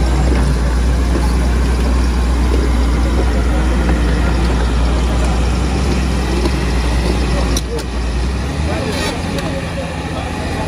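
Caterpillar 325D excavator's diesel engine running steadily with a deep low hum, which drops away about eight seconds in. Crowd voices chatter over it.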